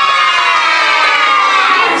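A class of young children shouting one long, drawn-out "Yeah!" together as a cheer, its pitch sagging slowly before it ends.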